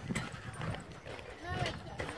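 Footsteps thudding irregularly on the wooden planks of a suspension bridge.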